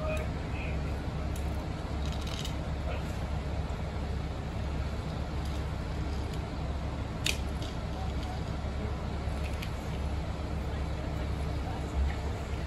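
Steady low drone of fire trucks' diesel engines running at the scene, with a few faint clicks and one sharp click about seven seconds in.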